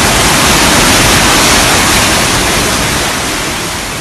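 Loud, steady rushing of floodwater in a swollen river, starting to fade out near the end.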